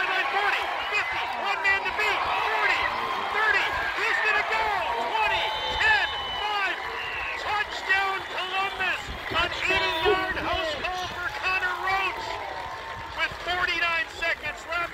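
Crowd of spectators cheering and shouting, many voices overlapping, as a long touchdown run unfolds. There is a brief high steady tone about five and a half seconds in.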